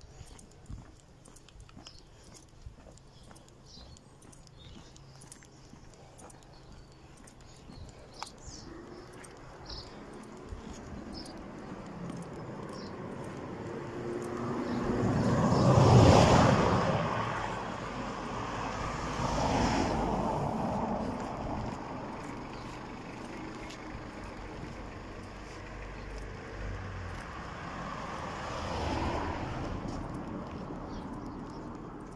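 Cars driving past on a narrow street: the loudest one swells up and fades away about halfway through, another passes a few seconds later, and a weaker one comes near the end. Faint footsteps click in the quieter first third.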